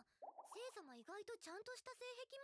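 Faint, high-pitched woman's voice speaking: an anime character's dialogue, quiet under the reaction mix.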